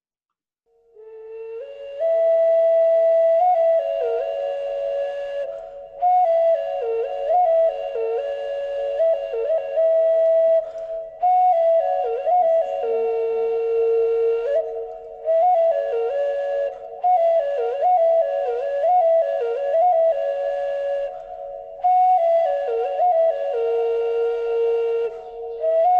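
Clay figurine ocarina, of the three-finger-hole kind, playing short phrases on a few mid-range notes with quick dipping ornaments. Two pitches often sound together, and the phrases are broken by brief pauses every few seconds.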